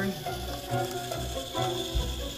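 Four Hitec HS-311 hobby servo motors whirring, their gear whine rising and falling in pitch as each sweeps back and forth on a slightly shifted sine wave.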